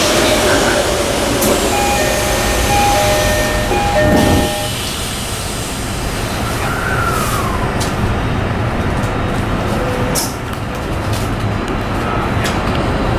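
Electric commuter train pulling away from a station and gathering speed, heard from inside the car: a steady rumble of wheels on the rails, with whining tones from the traction motors that step in pitch over the first few seconds.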